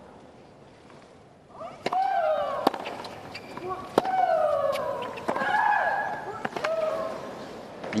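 Tennis rally: a serve and about five returns, each racket strike on the ball a sharp pop joined by a player's loud shriek that falls in pitch.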